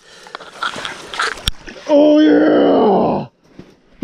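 A man's long strained grunt, steady and then falling in pitch, from the effort of lifting a heavy lake trout out of an ice-fishing hole. Before it come rustling and scuffling noises and a sharp click.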